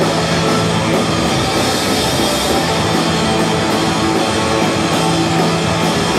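Live heavy rock band playing loud and steady, heard from the back of a crowded bar: distorted guitar with long held low notes over drums.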